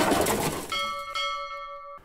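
The tail of an electronic intro track fading out, then a bell-like chime struck about two-thirds of a second in and again half a second later. It rings steadily until it cuts off suddenly.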